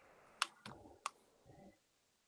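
Two faint, sharp clicks about two-thirds of a second apart, over quiet room tone.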